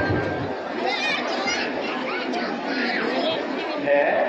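Crowd chatter: many voices talking over one another at once, none standing out.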